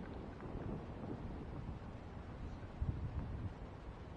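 Wind buffeting the camera microphone as a low rumble, with a stronger gust about three seconds in.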